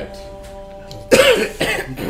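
A man coughs harshly about a second in, with a second, weaker cough just after, over soft sustained background music.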